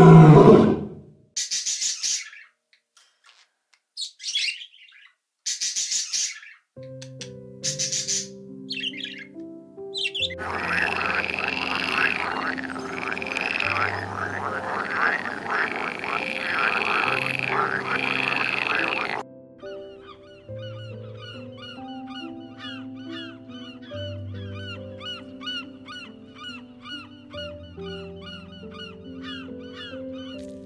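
A few short harsh bird squawks, then from about ten seconds in a loud chorus of green water frogs croaking for about nine seconds. After it comes a run of quick high chirps, about four a second. Soft background music with held low notes plays under it from about seven seconds in.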